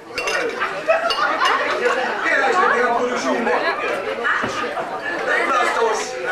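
Speech: several voices talking at once, with a few short clinks.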